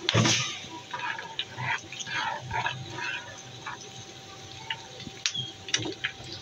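Onions and freshly added curry leaves sizzling and crackling in hot oil in a cast-iron pan while a steel spoon stirs and scrapes through them. There is a sharp clack of the spoon just after the start, then irregular spitting and scraping.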